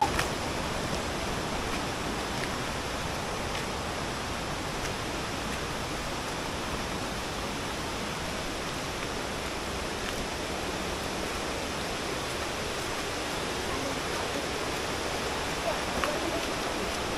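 Steady rush of river water tumbling over rocks in shallow rapids, a constant even roar that cuts in suddenly at the start.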